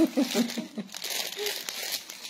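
Crinkling rustle of a sheer embroidered dupatta and plastic packaging being handled and spread out flat, a crackly sound with many small clicks.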